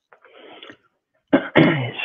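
A faint, muffled cough heard over a video call's audio, then a man starts speaking about a second and a half in.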